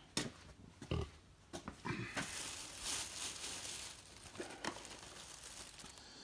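Thin plastic shopping bags rustling and crinkling as they are handled, after a few soft knocks and thumps in the first couple of seconds.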